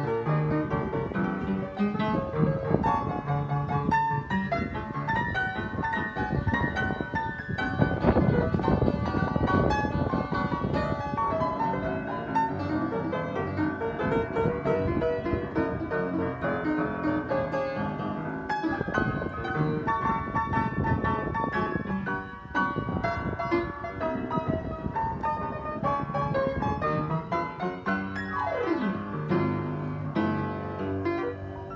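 Freshly tuned upright piano, its front panels off, played with both hands in a continuous flowing passage of chords and runs, now in full tune.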